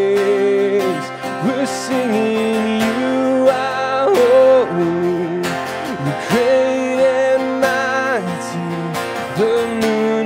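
A man singing a worship song while strumming an acoustic guitar, his voice holding long notes.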